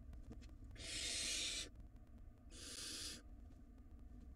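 Barn owl nestlings giving two raspy hissing calls, the first about a second in and lasting nearly a second, the second shorter, about two and a half seconds in.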